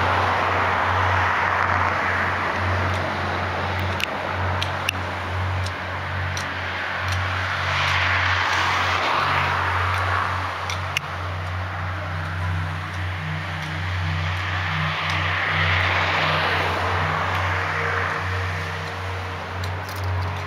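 Small waves of the sea washing onto a sandy beach, the surf swelling and fading slowly, loudest about eight and sixteen seconds in, over a steady low rumble.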